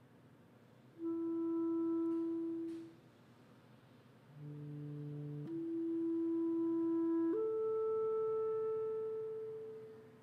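Solo clarinet playing slow, long-held notes with pauses between. One note is held for about two seconds, then after a pause a lower, fuller tone changes into a held note, which steps up to a higher note and fades away near the end.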